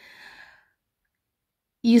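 A short, soft breath into a close microphone during the first half-second, the kind a speaker takes before going on talking. A voice starts speaking near the end.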